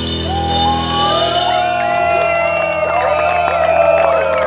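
The last chord of a rock song ringing out through the guitar and bass amplifiers, with a steady amp hum, while the audience whoops and shouts.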